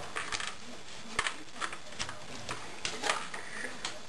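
Scattered light clicks and small knocks from a plastic airsoft rifle, a Double Eagle M85 G36C replica, being handled and turned over in the hands, about half a dozen in all.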